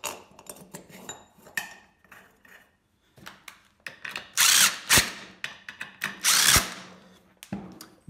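Cordless drill-driver running screws into the valve cover on an air compressor pump head, in two short runs about a second and a half apart. Light clicks and clinks of the screws and parts being handled come first.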